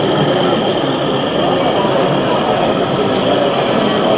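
An 0e-scale model locomotive running: a steady high-pitched whine starts suddenly and holds, over the chatter of a busy hall.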